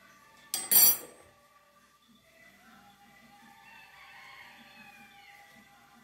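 A metal spoon knocks against a plastic blender jug in one short clatter about half a second in, as a spoonful of sugar is tipped into the jug.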